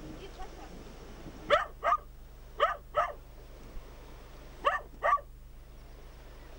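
A dog barking off-screen in quick doubled barks, three pairs in all, each pair about half a second apart.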